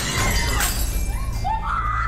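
A crash of household objects breaking and smashing in the first half-second, followed by a woman's shouting voice.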